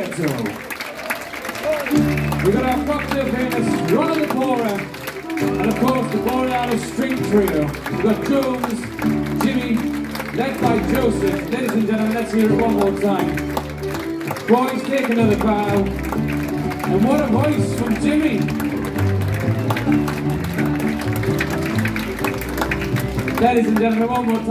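Live acoustic ensemble music: double bass, violin and acoustic guitar, with a man's voice singing over deep sustained bass notes. The bass enters about two seconds in, after a short stretch of applause.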